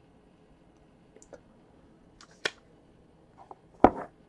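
A few sparse clicks and light knocks from a clear plastic card holder being handled at a desk, the loudest a sharp knock near the end.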